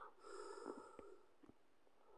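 Near silence: a person's faint breath in the first second, with a few faint small clicks.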